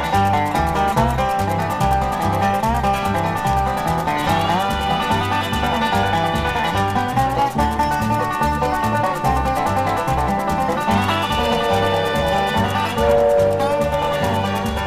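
Instrumental bluegrass break played on five-string banjo and acoustic guitar over a bouncing two-beat bass line. Long held notes ring out above the picking about four seconds in and again near eleven seconds.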